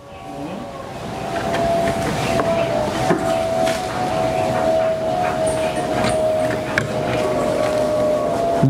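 A steady machine-like drone with a held tone runs throughout, over scattered small knocks and rustles as a steel bowl scoops powdered grain from a sack and tips it into a plastic drum.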